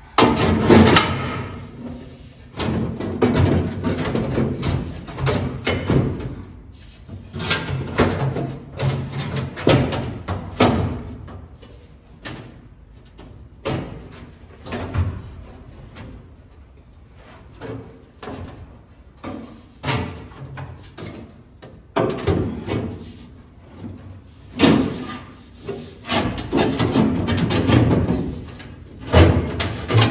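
A thin sheet-metal transmission tunnel patch panel being handled and test-fitted against a car's bare floor pan: irregular clunks, scrapes and rattles of metal on metal, loudest just after the start and again near the end.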